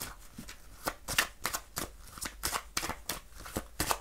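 A deck of cards being shuffled by hand: a quick, irregular run of crisp card slaps and clicks, several a second.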